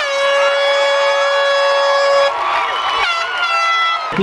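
Air horn blasting a steady note for a little over two seconds, then a second, higher horn blast about a second later, celebrating a touchdown.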